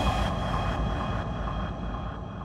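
Electronic background music fading out: a held high tone over a steady pulse, getting quieter throughout.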